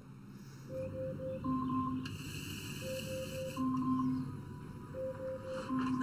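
An Amazon Echo Dot alarm chime: a gentle repeating melody that wakes a sleeper. The phrase is a quick triple note, then a longer low note and a higher note, and it comes round about every two seconds.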